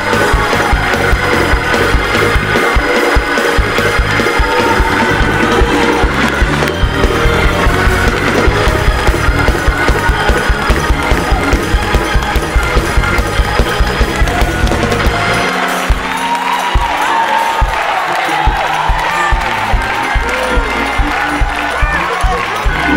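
Upbeat church praise music, organ-led with a steady driving beat, while the congregation claps along.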